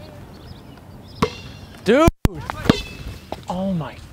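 A single sharp knock with a short ring after it about a second in, followed by short shouted vocal exclamations that are briefly cut off by a moment of total silence midway.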